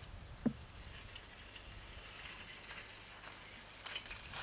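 Faint outdoor ambience with a soft, even high hiss, and one short knock about half a second in.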